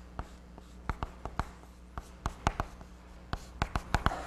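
Chalk writing on a blackboard: about a dozen short, sharp taps and scrapes as strokes are laid down, over a low steady hum.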